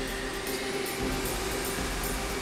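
Caterpillar 988 wheel loader's diesel engine running steadily while hauling a marble block, mixed with background music.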